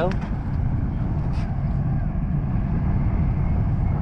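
Steady low rumble of wind buffeting the microphone.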